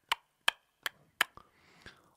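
Mechanical pendulum metronome ticking steadily, about two and a half clicks a second, stopping a little past halfway, with a faint knock near the end.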